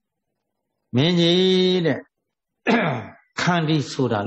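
A man's voice preaching in Burmese: after a short pause, one long intoned syllable held for about a second, then ordinary speech resumes.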